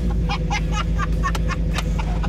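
The engine of a custom-built 1953 Chevrolet pickup running steadily with a low rumble, its pitch holding even. Its running gear is all new under the old body.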